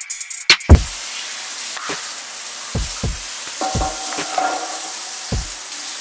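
Food frying in a pan, a steady sizzling hiss from about a second in, under hip hop music whose deep falling kick drums are loudest at the start and come back more softly a few times.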